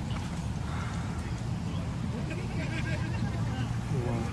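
Faint, indistinct voices of people some way off over a steady low rumble, with no clear words.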